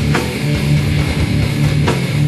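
Live thrash metal band playing: a heavy electric guitar riff over drums, with sharp crashes a little after the start and again near the end.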